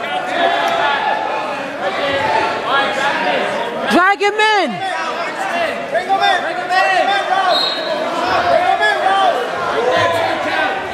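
Coaches and spectators shouting and calling out in a large gym, their voices echoing, with one loud drawn-out shout about four seconds in.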